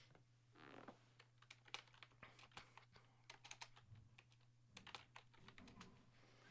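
Faint computer keyboard typing: scattered light key clicks at an uneven pace, over a steady low electrical hum.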